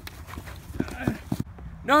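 Scuffle of two men grappling on grass, with a quick run of dull thumps about a second in as the tackle lands, then a man's pained shout of 'No' near the end.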